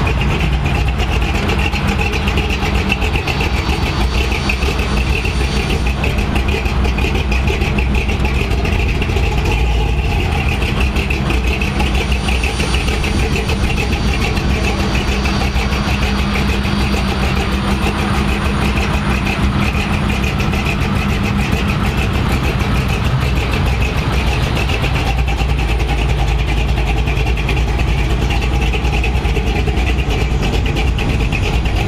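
Lifted square-body pickup truck's engine running at low speed as the truck rolls slowly by: a steady low rumble, with no revving.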